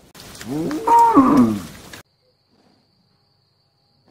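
A cow mooing once, a single pitched call that rises and then falls over about two seconds, then cuts off abruptly, leaving near silence.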